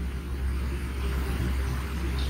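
Steady low hum with a faint hiss underneath: the background noise of a poor-quality lecture-hall recording.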